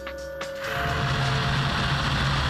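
Coolant spray switching on inside a CNC tool grinder about half a second in, then a steady hiss of jets flooding the grinding wheel, with a low machine hum, over background music.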